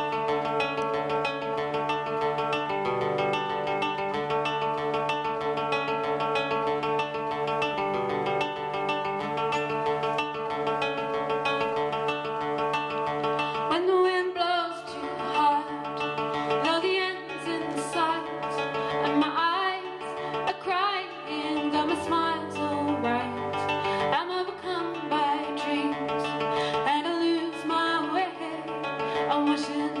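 Live acoustic folk music: acoustic guitar and mandolin playing held, ringing chords as an instrumental opening, then a woman's voice starts singing over them about halfway through.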